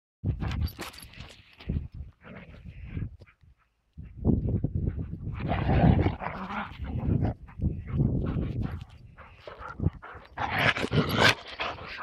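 Two dogs running across grass: irregular bursts of movement noise without clear barks, with a brief silence just before four seconds.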